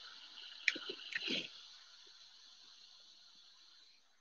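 A few soft clicks and rustles from trading cards being handled, about a second in, then faint room hiss.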